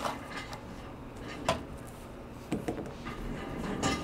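Faint handling noises: a few light clicks and rustles of a trading card in a clear plastic holder being handled with gloved hands.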